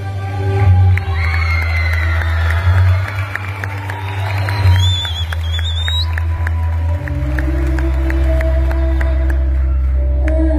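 Live band music played loud through a hall's sound system, with a heavy, steady bass. The audience cheers over it, and there is a whistle about five seconds in.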